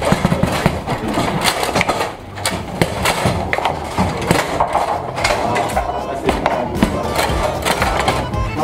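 Foosball (baby-foot) play: rapid, irregular knocks and clacks as the ball is struck by the players' figures and hits the table walls, with the metal rods sliding and banging, over background music and talk.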